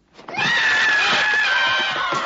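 A loud, shrill scream bursts in suddenly a fraction of a second in and is held, its pitch sagging slightly.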